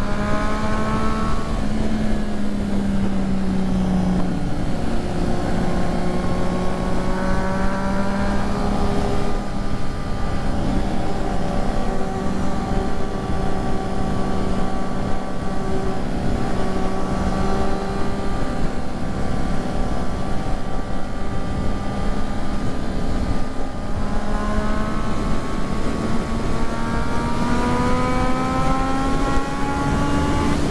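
Triumph Street Triple 675's inline three-cylinder engine running at highway cruising speed. Its pitch eases slightly in the first few seconds, holds steady, then climbs over the last six seconds as the bike accelerates, under a heavy rush of wind.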